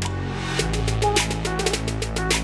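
Background electronic music: held synth tones, then about half a second in a deep bass and a steady drum beat come in.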